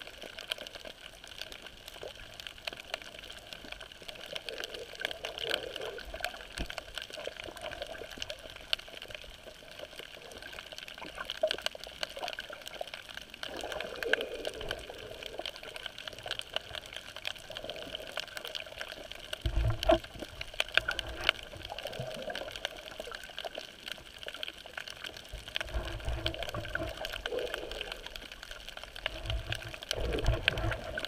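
Muffled water noise picked up underwater while snorkeling, steady, with scattered faint clicks. Low swells come in about twenty seconds in and again a few seconds before the end.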